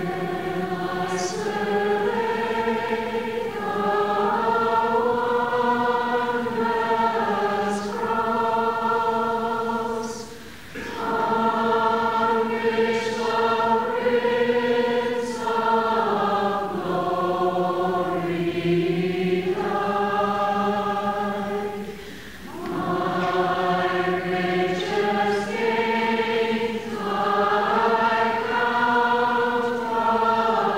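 Choir singing a slow hymn in long, held chords, in three phrases with a short break between each.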